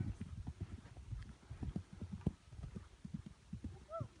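A pony's hooves thudding on grass at the canter, an irregular run of dull beats.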